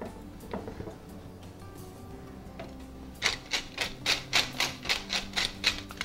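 Wooden pepper mill being twisted, cracking pepper with a quick, even ratcheting crackle of about five clicks a second that starts about three seconds in.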